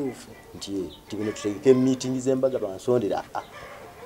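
A man talking in a low voice, in phrases broken by short pauses.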